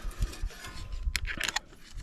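Light metallic clicks and handling noise from a leak-down tester's air-hose quick-connect fitting being handled, with a few sharp clicks about a second in, over a low rumble.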